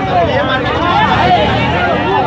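Street crowd with many voices shouting and talking over one another, while motorcycle engines run underneath.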